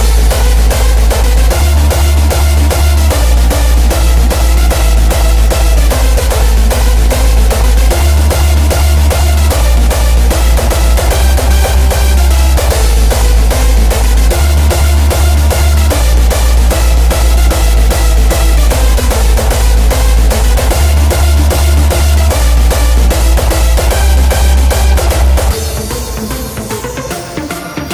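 Electronic dance music with a steady pounding kick drum over a loud, deep sub-bass line that steps between notes in a repeating pattern. It is a subwoofer excursion test track, made to drive a woofer's sub-bass hard without bottoming out its voice coil or suspension. It starts suddenly and cuts off shortly before the end.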